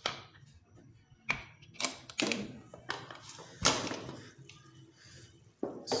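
Aluminium pressure cooker lid being twisted open and lifted off: a series of separate metal clunks and scrapes, the loudest about three and a half seconds in.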